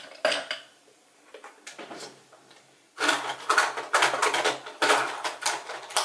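Makeup products and hard containers clattering as they are rummaged through and handled: a single click at the start, a short lull, then about three seconds of quick, jumbled clicks and knocks.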